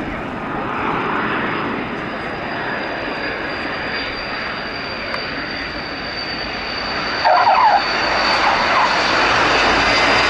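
Transall C-160's twin Rolls-Royce Tyne turboprop engines running on approach and landing: a steady propeller roar with a high turbine whine. A short squeal comes about seven seconds in, and the engines run louder after it.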